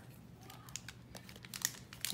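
Faint rustling and a few light taps of baseball trading cards being handled and laid down on a cloth-covered table.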